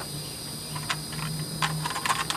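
Steady high-pitched chorus of crickets or similar insects, with a few light clicks about a second in and near the end as a plastic container of cotton balls is handled.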